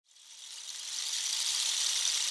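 An intro noise swell: a high, airy hiss that fades in from silence and grows steadily louder.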